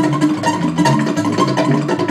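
Live instrumental band jam: an electric guitar and an acoustic guitar over a hand drum, with a moving low line of notes and steady drum strikes.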